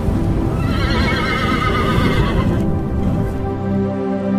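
A horse whinny sound effect, one quavering neigh of about two seconds starting about half a second in, over music and a low rumble of galloping hoofbeats. The rumble gives way to steady held music chords near the end.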